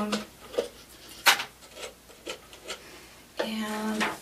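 A few sharp snips of small craft scissors trimming stray bits from the cut edge of a plastic soda bottle, irregularly spaced, the loudest about a second in.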